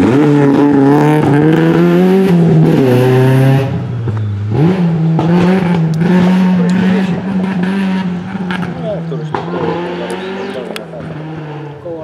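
Opel Kadett GSi rally car's four-cylinder engine accelerating hard away from a corner, its pitch climbing through a gear. It shifts up about four seconds in, then pulls on at a steady note, fading as the car drives off into the distance.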